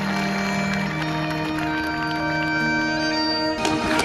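Bagpipes playing long held notes over their steady drones, with drum strokes coming in near the end.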